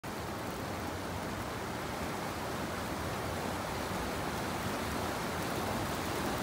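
Steady rushing of a fast-flowing stream.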